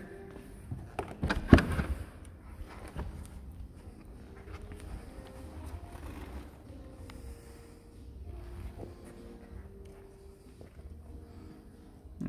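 A Chevrolet Corvette Z06's driver door being opened: a few sharp clicks and a knock about a second and a half in, then a faint low background hum.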